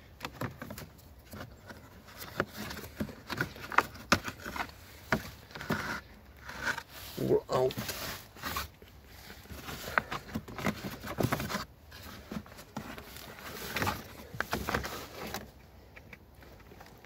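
Irregular plastic clicks, knocks and scraping from a car's plastic air filter housing being handled and lifted out of its seat in the engine bay.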